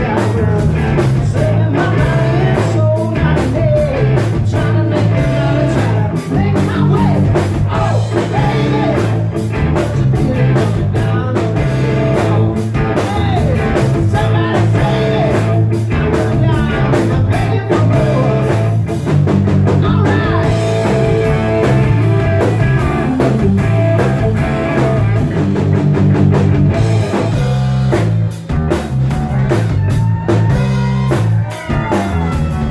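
Live rock band playing loudly: distorted electric guitar, electric bass and drum kit in a steady driving rhythm.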